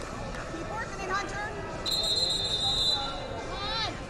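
Voices of coaches and spectators calling out in a large hall, with a single steady whistle blast of about a second, about two seconds in, the loudest sound here. A high rising shout comes just before the end.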